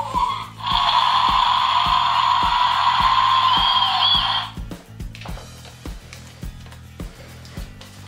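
Background music with a steady beat throughout; from about half a second in until about four and a half seconds, a loud, steady electronic sound effect from the InterAction Hank ankylosaurus toy's speaker plays over it.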